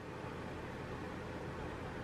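Steady room tone: a faint even hiss with a low hum and a faint steady tone under it.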